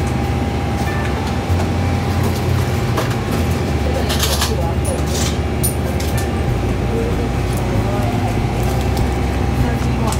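Steady low hum of a convenience store's background noise with a faint constant tone above it, with soft voices and a short burst of rustling noise about four seconds in.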